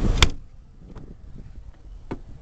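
The rear liftgate latch of a 2005 Chevrolet Suburban releasing with one sharp click, followed by quieter handling noise of the gate and a faint tick about a second later.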